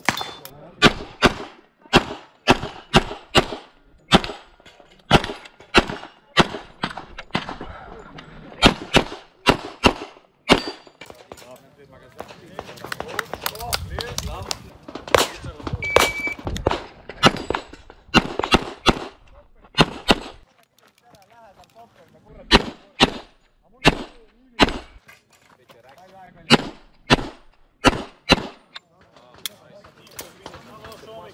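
Semi-automatic pistol fired in rapid pairs and short strings, with brief pauses between strings. Just past halfway a short electronic shot-timer beep sounds, and the shooting starts again at once.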